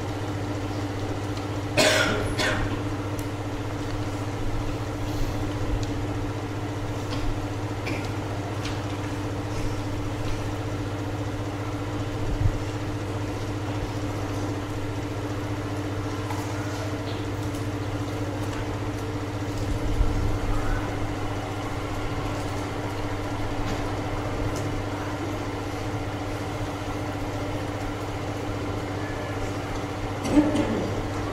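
A steady low hum with several constant tones throughout, with a single short cough about two seconds in and a few faint clicks.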